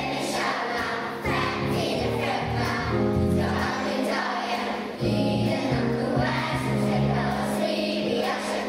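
Children's choir singing with instrumental accompaniment, a deep bass line under the held sung notes.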